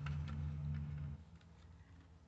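Light handling of paper bills and the plastic pockets of a cash-envelope binder: a few faint ticks and rustles. A low steady hum runs under the first second and then stops.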